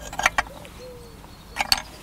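Broken terracotta crocks clinking against each other and the glazed pot as they are set into its bottom, with a few sharp clinks about a quarter second in and again near the end.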